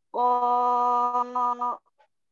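A reciter's chanted voice holding one long vowel at a steady pitch for about a second and a half, with a brief wavering near the end: the drawn-out madd of 'Ādam' in Quranic recitation, lengthened as Warsh's reading allows.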